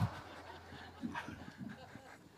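Faint, scattered chuckling and short voice fragments in a pause after a joke, well below the level of the speech around it.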